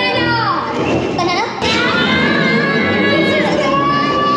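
Ride-film soundtrack: Minions' high-pitched cartoon voices chattering over music.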